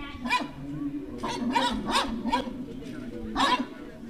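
A dog barking, a handful of short barks spread through the few seconds, with people talking.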